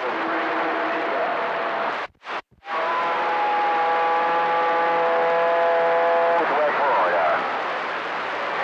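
CB radio receiver hiss from stations keying up on the channel, cutting out briefly about two seconds in. A steady multi-pitched tone then rides on the noise for several seconds before breaking into warbling tones near the end.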